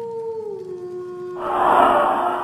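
Cartoon sound effects: a long held tone that steps down in pitch about half a second in, then a loud whooshing burst near the end, a magic vanishing effect as a character disappears in purple smoke.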